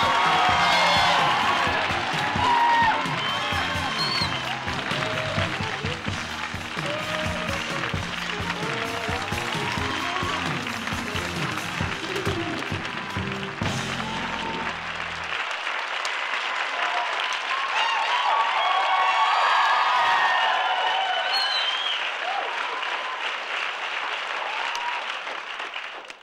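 A studio audience applauding and cheering while a live house band plays an entrance tune. The band stops about halfway through, and the applause and cheering carry on alone until near the end.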